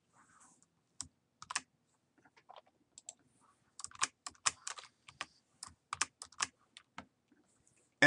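Computer keyboard keys pressed in short, irregular clusters, sparse at first and quicker from about four seconds in, as keyboard shortcuts fill a spreadsheet-style grade table.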